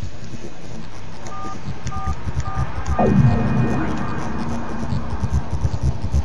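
Mobile phone keypad tones: four short two-note beeps about half a second apart as keys are pressed, then about three seconds in a falling electronic tone followed by a held tone for about a second. A steady low hum runs underneath.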